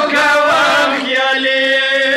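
Several young men chanting a noha, a Shia mourning lament, together through a microphone. Their voices waver through a run of notes, then settle into a long held note near the end.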